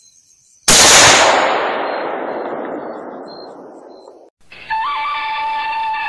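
A single rifle shot about a second in, its echo rolling away for about three seconds before cutting off abruptly. Music with held tones begins near the end.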